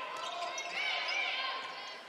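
Indoor volleyball rally on a hardwood court: a sharp ball hit near the start, then players' calls and crowd noise echoing in the gym.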